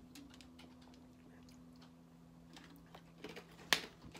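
Quiet gulping and small ticks as a drink is swallowed from a plastic shaker bottle, over a faint steady low hum. A sharp plastic click comes near the end as the bottle is handled.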